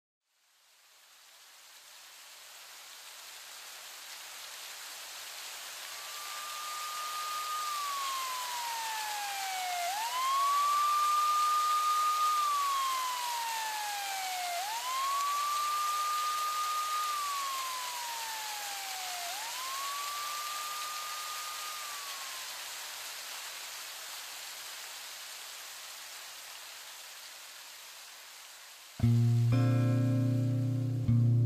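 A steady hiss swells and fades, and over it a siren-like wailing tone holds high, glides down and sweeps back up, four times about five seconds apart. Near the end an electric guitar and bass come in abruptly.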